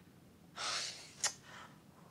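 A woman's audible breath, about half a second long, taken in a pause of upset speech, then a brief click-like catch of breath about a second in.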